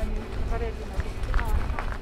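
People's voices talking and calling out outdoors, with a low irregular rumble of wind buffeting the microphone.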